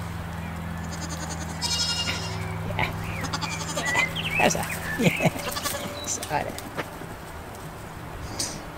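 Young goats bleating: several short calls, some high and some sliding down in pitch, from about a second and a half in, over a steady low hum.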